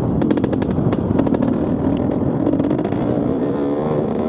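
Enduro dirt bike engine running under throttle, its pitch climbing near the end as the bike speeds up. A quick run of sharp clicks and knocks rattles over the engine sound in the first second and a half.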